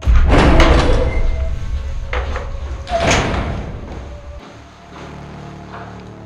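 A heavy door opened and slammed: a loud bang right at the start and further knocks about two and three seconds in, over a deep rumble that cuts off suddenly after about four seconds.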